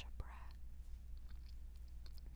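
A single mouth click, then a short soft breath close to the microphone and a few faint mouth clicks, over a steady low hum.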